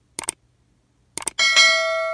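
Subscribe-and-bell animation sound effects: a quick cluster of clicks just after the start, another cluster about a second in, then a bright notification bell ding that rings on steadily.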